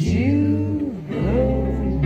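Live band music with acoustic guitars: a sung 'oh' glides up, holds and falls away in the first second, over steady low bass notes that carry on after it.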